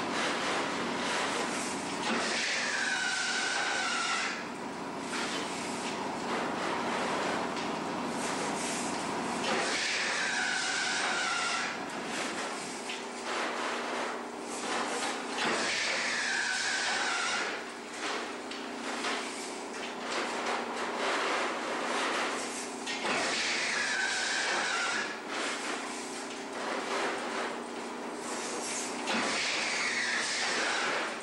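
Mitchum-Schaefer diamond-weave semi-automatic wire weaving loom running: a steady mechanical clatter and hum, with a whine that falls in pitch repeating about every six to seven seconds as the machine cycles.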